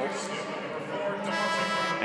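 Arena music in held, organ-like tones, with a brighter, buzzier chord swelling for about half a second near the end.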